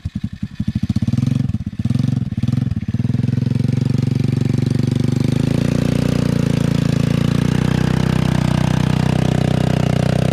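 Small petrol engine of a cheap kids' quad bike, ticking over with separate firing pulses for about a second, then revved hard and held at high revs under load as its 25-inch tyres churn through a muddy bog hole, with water splashing.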